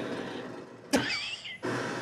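Sound effects from the anime episode's soundtrack: a soft hiss, then a sharp crack about a second in followed by a brief curling high whistle, and a low hum near the end.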